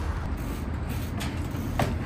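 Steady low rumble of traffic on a nearby road, with a short knock near the end as the trials bike comes down onto the wooden pallets.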